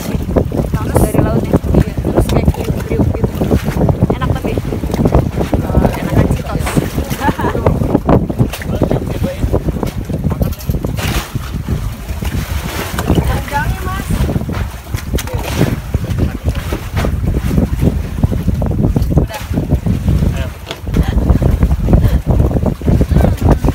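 Strong wind buffeting the microphone: a heavy, uneven rumble that gusts up and down.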